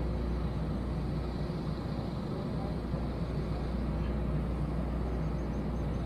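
Steady outdoor background noise: a constant low rumble with a faint hiss and no distinct events.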